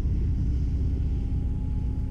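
Steady low rumble with a faint, thin hum from a 3D-printed RC plane's brushless electric motor and 12×6 propeller turning at low throttle as the plane taxis, the hum lifting slightly in pitch near the end.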